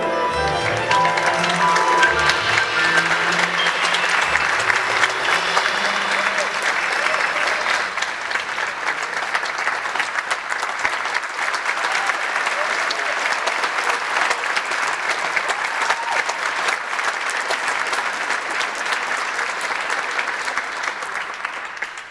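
A concert audience applauding loudly and steadily as a jazz number ends. Over the first several seconds the band's last notes on bass, piano and violin die away under the clapping, and the applause falls away at the very end.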